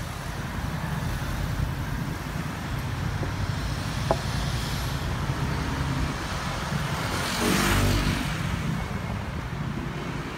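Street traffic: a steady low rumble of road vehicles, with one vehicle passing louder late on.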